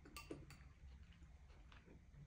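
Near silence with faint clinks of a metal spoon against a bowl as pozole is stirred: two clearer clicks within the first half second, then a few fainter ticks.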